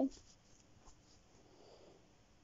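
After a spoken word at the very start, faint rubbing and rustling from a hand and phone brushing against fabric and skin, a little louder in the second half.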